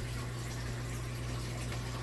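Aquarium filter running: steady bubbling and trickling of tank water, with a steady low hum underneath.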